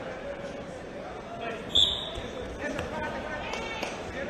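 A referee's whistle blows one short, sharp blast about two seconds in, over the steady voices of the crowd and coaches in the hall. Dull thuds of wrestlers hitting the mat come before and after the whistle.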